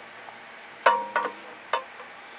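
Three sharp knocks, each with a brief ringing tone, the first the loudest: a stretched canvas being turned and set back down on the work surface.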